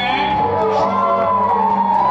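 Live band playing, with electric bass and acoustic guitar, a long high note held and wavering slightly in pitch over the steady accompaniment.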